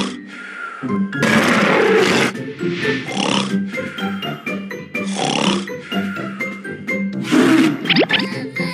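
Cartoon soundtrack: background music with repeating notes, broken about five times by loud, rough vocal effects from the animated characters, each lasting half a second to a second.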